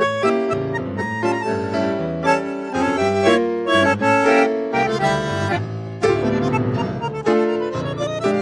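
Bandoneón and Casio digital piano playing a tango duet together, with a rising run of notes near the end.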